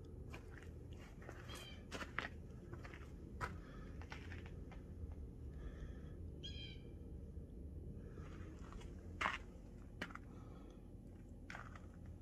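Footsteps crunching on frosty ground as scattered short crunches and clicks, over a steady low rumble of outdoor air. A short bird call sounds about six and a half seconds in.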